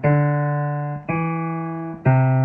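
Piano played slowly: one note struck at the start and a second about a second in, each held and slowly fading.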